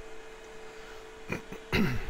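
A man clears his throat with a short falling grunt near the end, after a briefer vocal sound about halfway through, over a faint steady hum.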